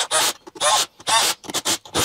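A man speaking in short bursts; no tool sound stands out.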